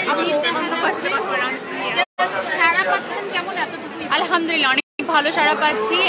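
A woman talking over the chatter of a busy crowd. The sound cuts out completely twice, briefly, about two seconds in and near the end.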